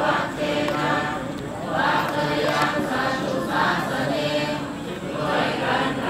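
A large group of Buddhist worshippers chanting together in unison, the recitation going in short repeated phrases.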